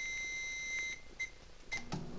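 Microwave oven beeping: a long, steady, high-pitched beep that stops about a second in, followed by two short beeps.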